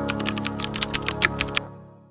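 Soft intro music with a rapid run of keyboard-typing clicks, a typing sound effect of about a dozen quick clicks over a second and a half. Music and clicks then fade away near the end.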